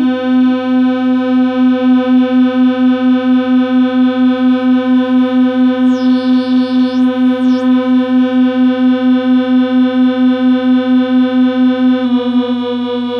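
Waldorf Rocket synthesizer holding one low note with a bright stack of overtones, pulsing in loudness about four times a second. About halfway through, a high sweep glides up and back down twice over the drone.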